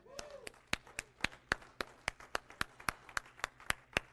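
Hands clapping, about five sharp claps a second in an even rhythm, from one person or a few people rather than a full crowd.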